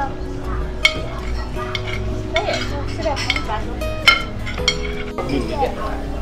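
Cutlery and dishes clinking during a meal over steady background music, with the sharpest clinks about one second in and about four seconds in.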